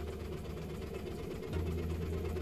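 Hill-Rom Vest high-frequency chest wall oscillation air pulse generator ramping up after a restart, pumping pulsed air through the hoses into the chest vest, which begins to vibrate. The frequency is set to about 15 Hz. It is a steady low drone that gets louder about one and a half seconds in.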